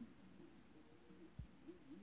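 Near silence, with a faint muffled sound wavering in pitch and a soft low thump about one and a half seconds in.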